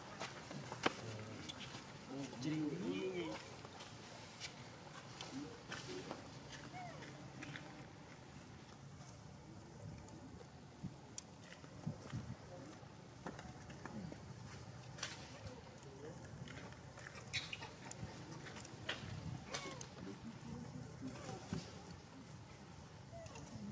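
Faint, indistinct human voices in the background, with a brief louder voice about two to three seconds in, and scattered light clicks and taps.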